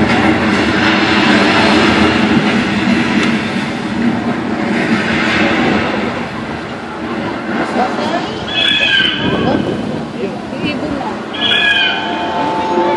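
A crowd of spectators talking all at once, a dense steady murmur of voices. Two short high-pitched calls stand out, about eight and eleven seconds in.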